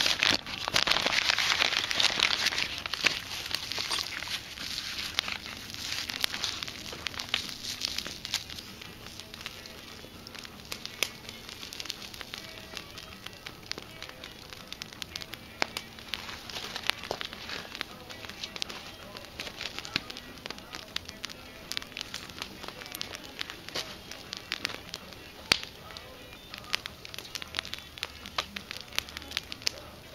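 Plastic wrapping crinkling loudly for the first couple of seconds, then a wood campfire crackling, with frequent sharp pops and snaps under the grill.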